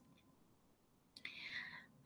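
Near silence, then a little over a second in a brief, faint intake of breath by a woman just before she resumes speaking.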